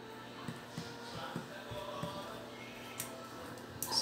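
A few small clicks from the knobs of a voice-effects pedal being turned by hand, over faint steady tones.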